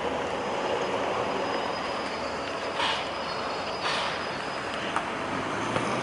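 Steady rushing background noise, with two short hissing swells around the middle and a sharp click near the end.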